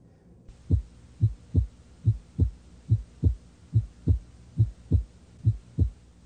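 Human heartbeat: low lub-dub thumps in pairs, about seventy beats a minute. It starts about half a second in over a faint hiss.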